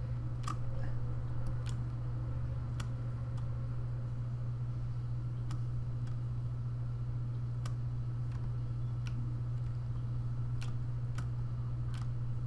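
Scattered single clicks at a computer, about one every second, over a steady low hum.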